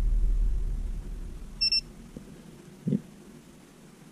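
VIFLY Beacon lost-drone buzzer giving one short, high beep about one and a half seconds in, as its button is held to switch it on. A low rumble fades away before the beep.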